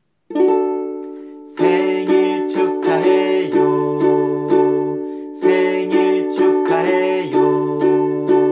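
Ukulele strummed: one chord rings out near the start, then a regular strumming rhythm begins about a second and a half in as a man sings a birthday song over it.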